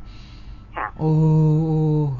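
A drawn-out, level exclamation of 'โอ้' ('oh') from a voice, held for about a second, after a short quiet pause and a brief falling sound.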